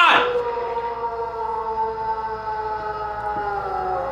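A man's scream from an anime soundtrack, held as one long cry and trailing off near the end.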